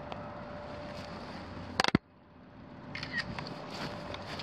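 A sharp double click of a phone camera taking a still photo, with the recorded sound cutting out suddenly just after and fading back in. Then light irregular crunching of footsteps on dry grass.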